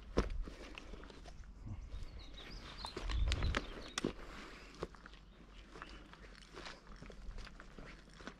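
A hiker's footsteps through dry grass and over rock, irregular steps with short rustles and snaps. A brief low rumble on the microphone about three seconds in.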